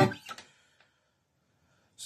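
The last strummed chord on a Faith Venus Blood Moon electro-acoustic guitar cuts off abruptly within the first half second, leaving a few faint string or hand ticks, then near silence.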